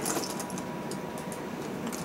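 Faint, scattered clicking of plastic LEGO pieces being handled and shifted in a plastic storage bin.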